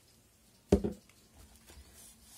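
A cotton pad rubbing over orchid leaves gives faint soft rustles and small clicks. A single short, sudden, loud sound comes a little under a second in, the loudest thing heard.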